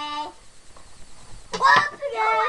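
A child's voice making a short, flat, nasal honk-like sound, then after a pause a loud wordless vocal outburst near the end.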